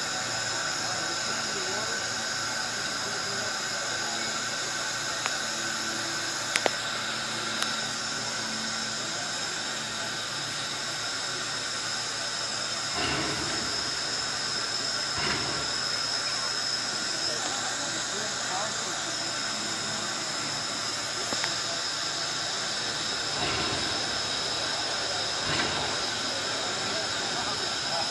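4-4-0 steam locomotive hissing steadily with escaping steam as it stands and creeps along, with four short, deeper puffs in the second half, about two seconds apart in pairs.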